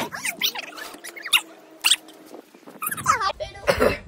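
A person's short, high-pitched squealing vocal sounds, several in a row, rising and falling in pitch: a reaction to the burning heat of an extremely hot chili chip.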